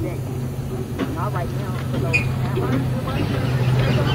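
A vehicle engine running steadily as a low, even hum, under faint, indistinct voices.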